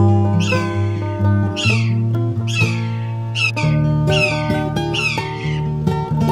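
Acoustic guitar music, with a bird's sharp squealing call falling in pitch repeated about six times over it.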